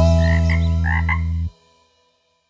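A song's final chord held, with a few short cartoon frog croaks over it, then the music cuts off suddenly about one and a half seconds in.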